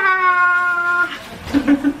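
A person's high-pitched, drawn-out cheer, held for about a second and sliding slightly down in pitch, followed near the end by short bursts of laughter.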